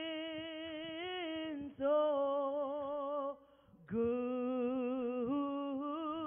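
A woman singing solo without accompaniment, holding long wavering notes in three phrases, with a short breath-pause before the third, which starts lower.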